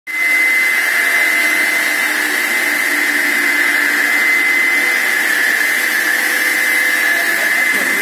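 Block cutter's 24-inch diamond blade spinning on its 2 HP three-phase electric motor, running free with nothing being cut: a loud, steady machine whine with one high, unwavering tone.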